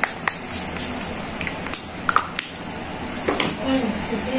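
Pump-spray bottle of facial setting mist sprayed at the face in a quick series of short hissing puffs, most of them in the first second.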